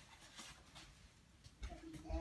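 Near silence: room tone, with a faint voice starting near the end.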